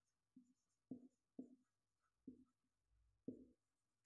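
Marker pen writing on a whiteboard: about five short, faint strokes spread over a few seconds, with near silence between them.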